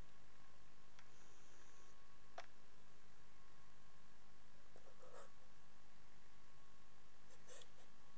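Steady camcorder hiss and faint hum in a quiet small room, with a few faint soft clicks and rustles.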